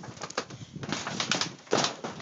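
Wrestlers moving and landing on a backyard trampoline, making a series of short thuds and knocks on the mat and frame. The loudest comes near the end.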